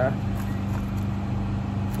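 Steady low mechanical hum of a motor or engine running in the background, one even drone with no change in pitch.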